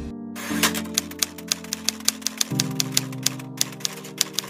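Typewriter-style typing sound effect, sharp key clicks about four times a second, over background music of held synth chords that change about every two seconds.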